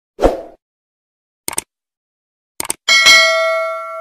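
A thump, then sharp mouse-style clicks in pairs, then a bell ding that rings out and fades over about a second and a half. This is the sound effect of a YouTube subscribe-and-notification-bell animation.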